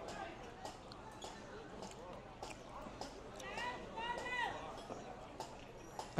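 Faint background chatter of a busy street, with one distant voice calling out about halfway through and scattered light clicks and taps.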